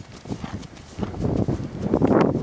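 Hoofbeats of an unshod Appaloosa–Thoroughbred mare moving at speed under a rider over dry dirt footing: a run of dull thuds that grows louder in the second half.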